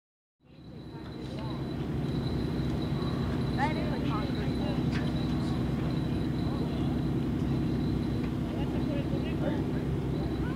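Outdoor ambience fading in over the first two seconds, then steady: a low rumble with a thin high whine above it and faint snatches of people's voices.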